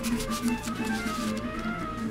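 Soft background music with a repeating low note pattern, over light rustling and sliding of paper cards being handled.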